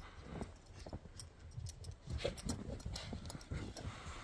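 Footsteps crunching in fresh snow: a series of soft, irregular steps.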